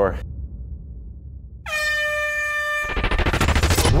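Handheld compressed-gas air horn sounding one steady blast of a little over a second, starting under two seconds in: the start signal of a mass-start swim. It gives way to a loud, dense rush of noise with fast crackle, the splashing of swimmers charging into the sea.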